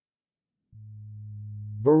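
Dead silence, then a steady low electronic tone held for about a second that runs straight into a synthesized text-to-speech voice starting to speak near the end. The tone sits at the voice's own pitch: a held buzz from the speech synthesizer before its first word.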